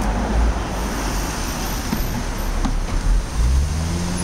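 Slow street traffic: cars driving past at low speed, with a car engine note rising near the end as one pulls up toward the speed bump.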